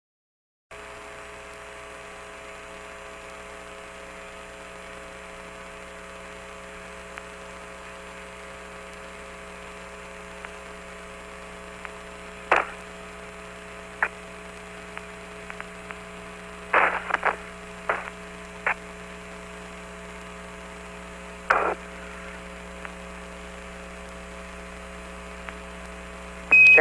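Open Apollo 15 air-to-ground radio channel: a steady hum with faint static that starts after a moment of silence. About halfway in, a handful of short crackles break in.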